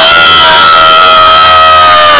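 A loud, steady high-pitched tone with overtones, held unbroken and sagging slightly in pitch near the end.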